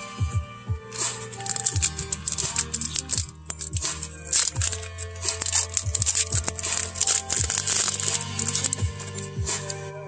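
Foil wrapper of a Flesh and Blood 'Welcome to Rathe' booster pack being torn open and crinkled by hand, a dense run of crackling from about a second in until near the end. Steady background music with a bass beat plays underneath.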